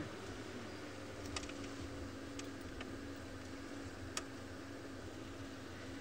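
Open safari vehicle's engine running as it drives slowly along a dirt track: a low, steady hum with a light hiss, and a couple of faint clicks.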